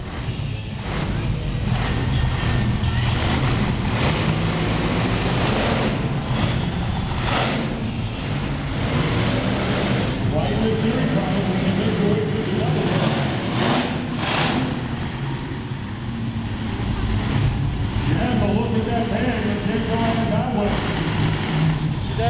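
Monster truck engine running and revving in short bursts a few times, echoing around an indoor arena, with a public-address announcer's voice and crowd noise underneath.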